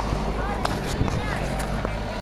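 Crowd chatter and murmur of spectators at an outdoor event, with a few sharp knocks.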